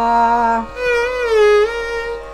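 Violin played in Carnatic style, a phrase in raga Bhairavi: a held lower note, a brief break, then a higher bowed note that sags slightly in pitch and slides back up.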